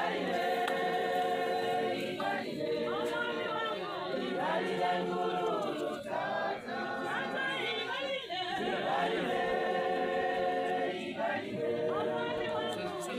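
A large group of voices singing together unaccompanied, in long held notes, with brief pauses between phrases every few seconds.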